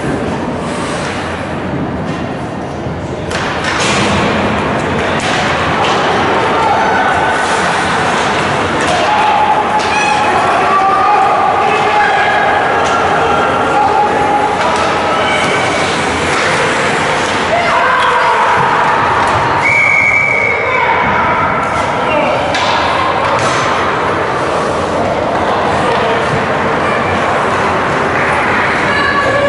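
Ice rink noise at a youth hockey game: spectators shouting and cheering, with thuds of pucks, sticks and players against the boards. It gets louder about four seconds in, with long drawn-out shouts in the middle.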